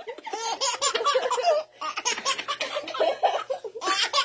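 A baby laughing in short, repeated fits, with women laughing along, and a brief pause under two seconds in.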